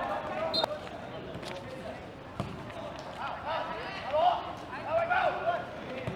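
Field sound from a small-sided football match on artificial turf: a few sharp thuds of the ball in the first half, then faint shouts of players.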